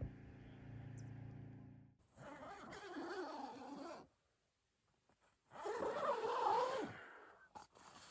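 Guitar music fades out. Then a person inside a tent makes two long, wavering vocal sounds of about two seconds each, with a short silence between them.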